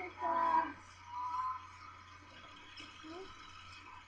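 Short voiced sounds from a person in three brief bursts, not clear words, over a steady low hum.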